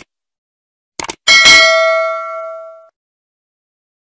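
Subscribe-button sound effect: two quick mouse clicks about a second in, then a single bright bell ding that rings and fades out over about a second and a half.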